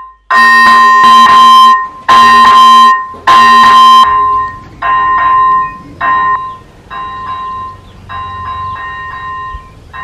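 Electronic level-crossing warning bell (AŽD ZV-01) sounding through its loudspeaker, which is stuffed with a rag: a steady run of repeated ringing bell strokes. The strokes are loud for the first four seconds and quieter from about five seconds in.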